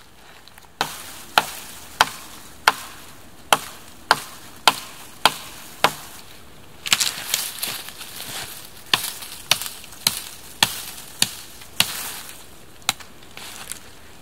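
A large knife blade chopping repeatedly into the base of a green beech sapling, sharp hits about one and a half to two a second, with a short rustle about halfway through.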